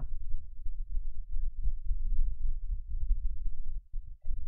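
A low, uneven rumble with nothing higher in pitch above it, and no speech.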